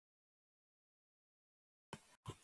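Dead silence, until a short sound cuts in right at the very end.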